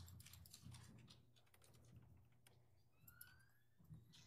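Near silence with faint, scattered computer keyboard and mouse clicks over a steady low hum, with a faint short squeak about three seconds in.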